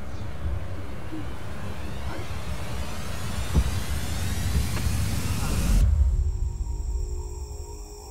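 A road vehicle approaching, its engine rumble and tyre noise growing steadily louder, then cut off abruptly about six seconds in; after the cut, steady high tones like crickets or soft music.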